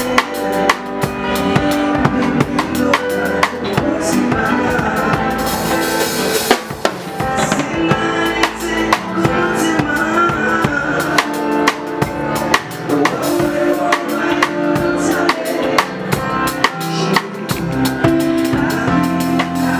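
Live band playing an instrumental passage: a drum kit keeps a steady beat under an electric guitar, with a bright crash wash about six seconds in.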